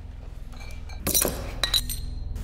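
Glass bottles clinking, with a short hiss about a second in followed by a couple of ringing clinks. A low drone rises underneath.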